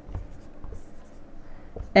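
Whiteboard marker scratching across a whiteboard in short irregular strokes as letters and symbols are written.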